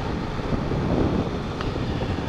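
Motorcycle cruising on a highway: a steady engine and road drone with wind buffeting the microphone.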